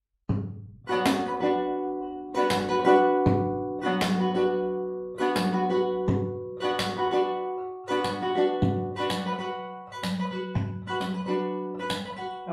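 Nylon-string classical guitar strummed in a repeating flamenco-style rhythm pattern on a B minor chord. Sharp, ringing chord strokes mix thumb 'kick' downstrokes, percussive slaps and quick finger upstrokes, and a few strokes carry a deep knock.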